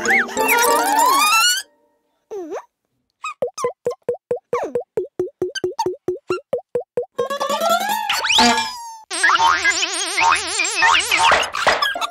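Cartoon sound effects for a toy duplicating machine at work: children's music with rising glides, then a long string of short springy plops about four or five a second. After that come rising whistling sweeps and a warbling electronic buzz that ends as the copy comes out.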